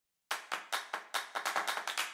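Sharp hand claps in a quickening rhythm, starting about a third of a second in at about five a second and speeding up to about ten a second near the end.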